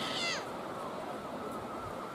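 Steady wash of small sea waves on the shore, with a brief falling animal cry at the very start.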